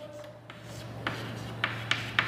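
Chalk writing on a blackboard: faint scratching strokes with a few sharp taps in the second half as letters are formed.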